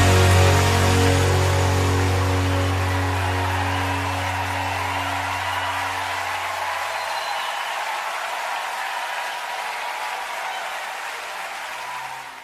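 The last chord of a live worship band ringing out and fading away over about seven seconds, with a crowd applauding throughout, slowly dying down.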